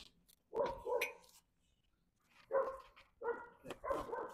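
A dog barking several times in short bursts, with a pause of about a second in the middle.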